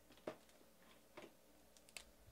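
Near silence with three faint, short clicks spread across the two seconds, like small handling noises.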